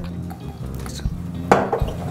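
Olive oil trickling from a glass bottle's pour spout into a glass measuring jug over soft background music. About one and a half seconds in there is a single knock as the glass bottle is set down on the stone counter.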